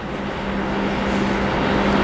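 Mechanical rumble with a steady low hum, growing gradually louder.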